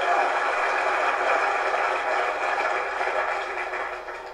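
Audience laughing and applauding, the applause fading away near the end.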